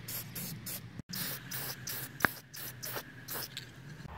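Aerosol can of Rust-Oleum clear coat spraying in short repeated hisses. A single sharp click sounds a little past the middle.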